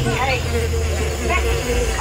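Steady low rumble inside a moving theme-park ride vehicle, with voices talking over it.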